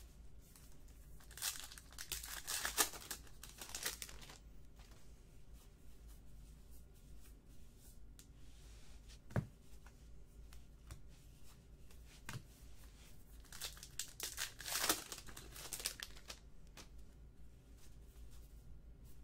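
A trading card pack's foil wrapper torn open and crinkled, in two spells about a second and a half in and again near fourteen seconds, with a few soft knocks of cards handled on the table between.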